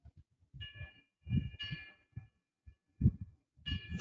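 Faint, muffled murmuring in short, irregular bursts, with a thin steady ringing tone alongside.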